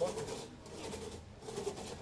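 Two-man crosscut saw being pulled back and forth through a log, the steel teeth scraping through the wood.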